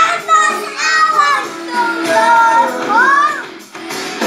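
A young boy singing loudly into a handheld karaoke microphone over backing music, his voice swooping up and down in pitch about three seconds in and breaking off shortly before the end.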